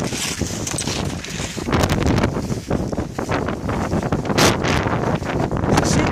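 Wind rushing over a handheld phone's microphone during fast downhill skiing, with the scrape of skis on packed snow breaking through in short bursts.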